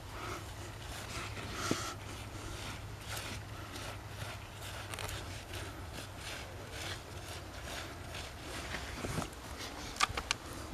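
Loose, mica-rich soil being scraped and scooped out of a dig by a gloved hand, a run of faint rasping scrapes about one or two a second.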